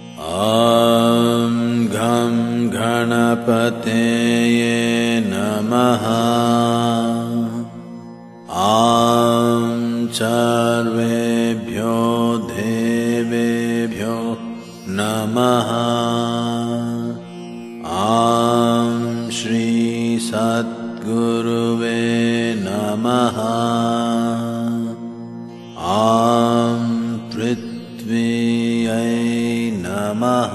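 A man's voice chanting Sanskrit mantras in long phrases of several seconds each, with short pauses between them, over a steady drone.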